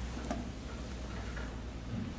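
Writing on a classroom board: a sharp tick about a third of a second in, then a few soft short scratches, over a steady low room hum.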